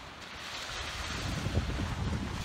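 Surf washing up the beach, swelling over the two seconds, with wind buffeting the microphone in low rumbles.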